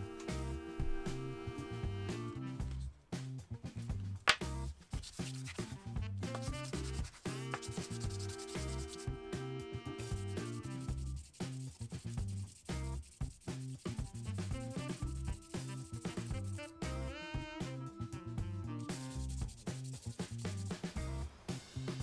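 Walnut and epoxy resin pendant rubbed by hand against wet abrasive sheets, a run of short rough sanding strokes. Background music with a steady beat plays under it.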